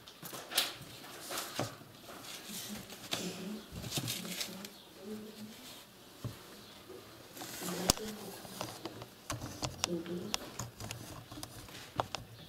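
Quiet writing in a room: scattered light taps, clicks and rustles of pens and paper, under faint low murmuring voices.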